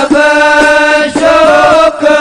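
Arabic devotional qasida (sholawat) being sung: one long held, melismatic note, then a short wavering turn after a brief break about a second in.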